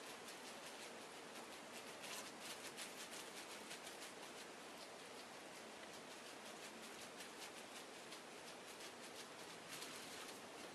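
Fingertips patting bubble wrap laid over a soap-soaked wool felt heart, faint quick soft pats with light plastic crinkle. This is the wet-felting stage, where gentle patting works the wet fibres into clinging together.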